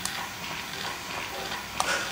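Two short clicks of keys being pressed on a ProMinent Compact Controller's keypad, one at the start and one near the end, over a steady background hiss.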